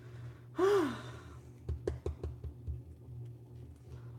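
A man's short voiced sigh about half a second in, its pitch rising then falling, followed by a few light clicks and taps, over a steady low hum.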